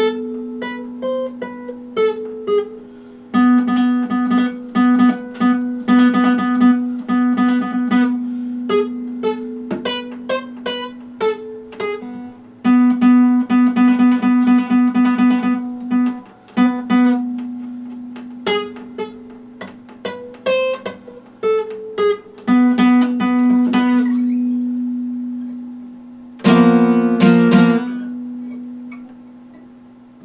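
Epiphone acoustic guitar fingerpicked: single plucked notes played over a low note that keeps ringing underneath. Near the end a louder strummed chord is left to fade.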